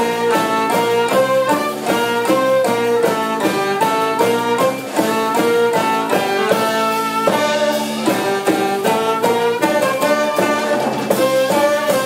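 Live band playing a fast melody in unison on saxophone, clarinet and other winds and strings, over a steady beat from drums and hand percussion.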